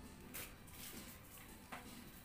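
Very quiet handling of an electrical extension cord as it is uncoiled by hand, with two light brushes of the cable, about a third of a second in and near the end.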